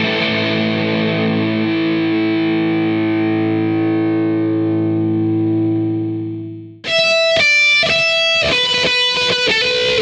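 Distorted electric guitar (a Stratocaster through overdrive pedals into a Marshall amp): a held chord rings and slowly fades, then is cut off abruptly about seven seconds in. A riff of short single notes with the same distorted tone follows.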